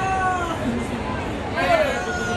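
A high-pitched human voice calling out twice over steady stadium background noise: a short, slightly falling call at the start and a second, bending call near the end.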